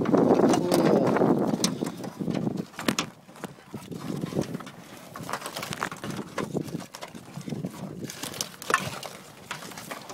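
Live crabs clattering in a crab pot, a scatter of sharp clicks and clacks as shells and claws knock and scrape against each other and the mesh. A louder rustle of handling fills the first two seconds.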